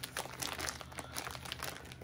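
Packaging of an unopened cross-stitch kit crinkling as it is handled, in a run of irregular small crackles.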